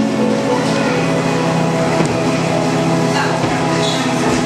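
Steady, loud hum and hiss of a busy indoor hall's background noise, holding a few constant tones, with no distinct events.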